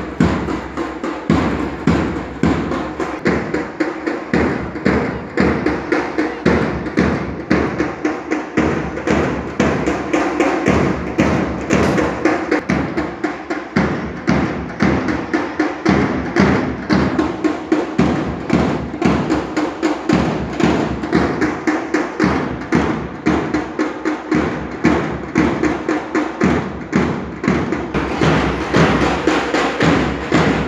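March music with a steady drumbeat at about two beats a second, keeping time for marchers.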